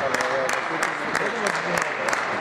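Table tennis balls clicking off bats and tables around a sports hall: irregular sharp clicks, about three a second, each with a short echo, over background voices.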